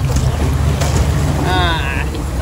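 Wind buffeting the microphone over open lake water, with a short high-pitched wavering call about one and a half seconds in.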